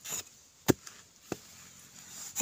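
A digging tool striking hard, dry soil in three separate chops, the second, about two-thirds of a second in, the loudest.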